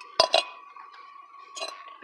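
Hard salvaged items, such as a mug, clinking as they are set down on concrete: two quick clinks a fraction of a second apart, then another about a second and a half later.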